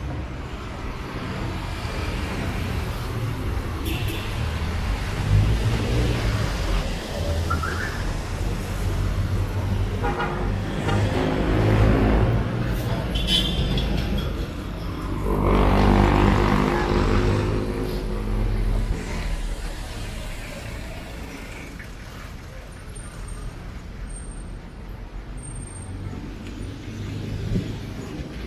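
Road traffic on a busy city street: a steady rumble of passing vehicles, swelling twice as louder vehicles go by, the louder one a little past halfway, then easing off toward the end.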